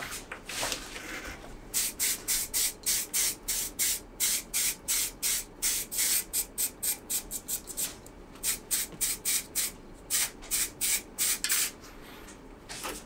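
Aerosol spray paint cans hissing in rapid short bursts, about three or four a second, starting about two seconds in with a brief break near the middle: camouflage paint being dusted on in quick strokes.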